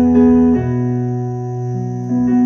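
Yamaha MOXF8 synthesizer keyboard played with both hands, holding sustained chords; a new low bass note comes in about half a second in, and the chord shifts again near the end.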